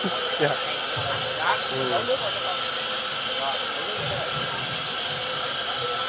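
Electric soybean grinder running steadily, a constant whirring hiss as it grinds soybeans into soy milk.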